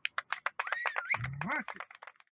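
Scattered hand claps from a small audience as a live acoustic song ends, with a rising whistle about halfway through and a short rising vocal whoop.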